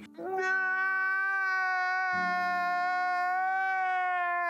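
A man's long, drawn-out wailing cry, held on one high pitch for several seconds and sagging slightly at the end.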